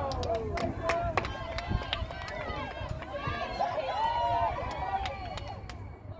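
Many high voices shouting over one another at a girls' soccer match, players and spectators calling out during an attack on goal. Sharp clicks are scattered throughout, over a low rumble.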